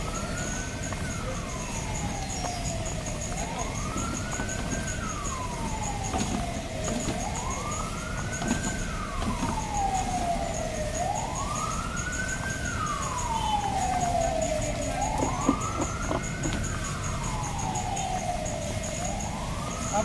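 A wailing siren that rises quickly and falls slowly, about once every four seconds, five times over, above a steady background noise.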